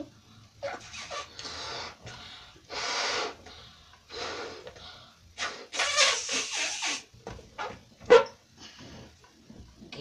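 A balloon being blown up by mouth: a run of breathy puffs half a second to a second long, with a sharp click about eight seconds in.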